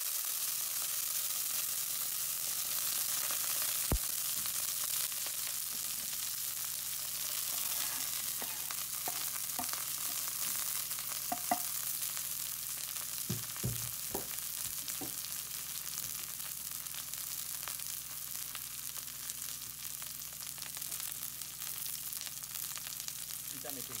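Chopped butterbur buds (fukinoto) frying in hot olive oil in a wok: a steady sizzling hiss that eases slightly over the stretch. A few small knocks sound through it.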